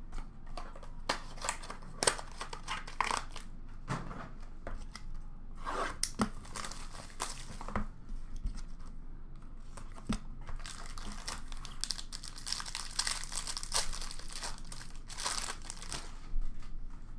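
A trading card pack wrapper being torn open and crinkled, with cards and cardboard box packaging handled: irregular rustling, crinkling and light taps, busiest a few seconds before the end.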